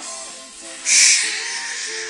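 Music playing from a television, recorded off the TV speaker, with a sharp hissing burst about a second in.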